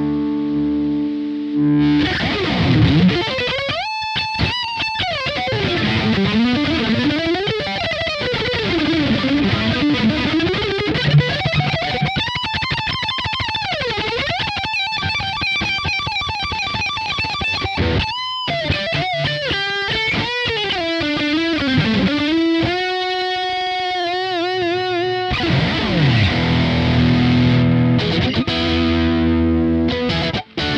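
Distorted electric guitar played through a Kemper profile of a Randall Satan 100W amp head, pushed by an Xotic RC Booster V2 pedal. A held chord opens, then a lead line full of bends and vibrato, quick runs near the end, and chords again for the last few seconds.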